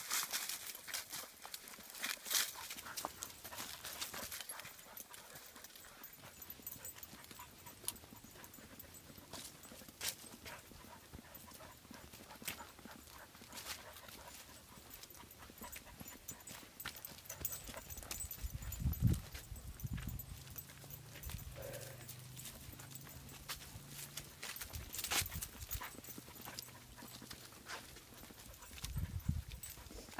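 Footsteps crunching and rustling through dry fallen leaves, an uneven run of soft crackles. A few low muffled thumps come about two-thirds of the way through and again near the end.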